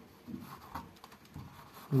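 A few soft scrapes and small clicks of a thin hand tool working under the square metal escutcheon of an interior door's thumb-turn lock, trying to twist it loose.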